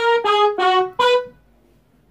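Electronic keyboard playing four quick melody notes in a brass-like voice, each held briefly and cut off cleanly, then a pause in the second half.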